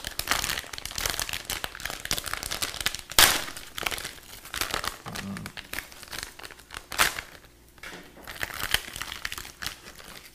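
Plastic anti-static bag crinkling and rustling as it is handled and opened to take out a 3D printer's controller board, with two sharper crackles about three and seven seconds in.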